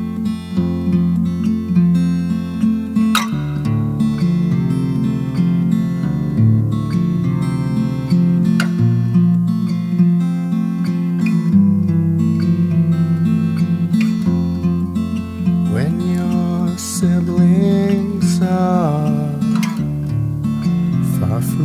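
Acoustic guitar music: strummed and plucked chords over sustained low notes, with a few gliding notes near the end.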